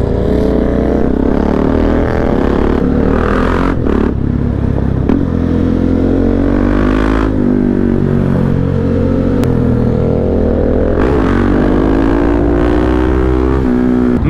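KTM 690 Duke's single-cylinder engine, fitted with an Akrapovic exhaust and a GPR decat link, heard on board as the bike is ridden hard; the engine note climbs and drops several times.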